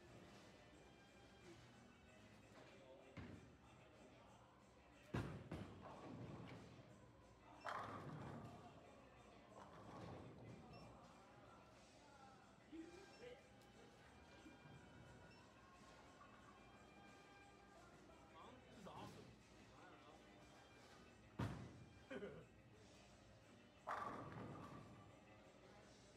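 Faint background music and voices in a bowling alley, broken by four sharp thuds and clatters of bowling balls and pins: one about five seconds in, another a few seconds later, and two near the end, the last trailing off for about a second.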